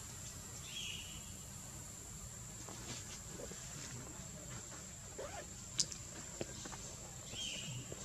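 Outdoor forest ambience with a steady high-pitched insect drone throughout. A short chirping call comes about a second in and again near the end, and two sharp clicks come a little past the middle.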